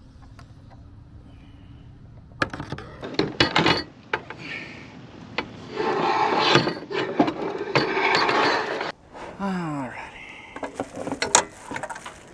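Knocks and clatter from an aluminium-framed solar panel being lifted onto metal roof-rack crossbars and set in place. A longer stretch of scraping and rubbing follows as it is slid into position, and there are more clicks near the end. The first couple of seconds hold only a low steady hum.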